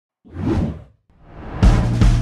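Intro whoosh sound effects: one swells and fades, then a second rises into a music track with a drum-kit beat that comes in about one and a half seconds in.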